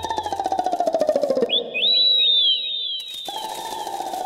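Cartoon soundtrack effects: a fast buzzing tone that slides downward twice, with a run of quick, high whistle-like falling chirps between them.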